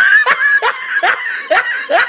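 High-pitched laughter: a quick run of short 'ha' syllables, about two or three a second, each dropping in pitch.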